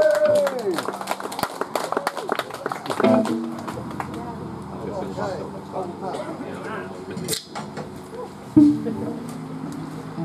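The last chord of a live punk song dies away just after the start, followed by about three seconds of scattered clapping. Then amplifier hum and crowd voices fill the gap between songs, with a brief bass-guitar note near the end.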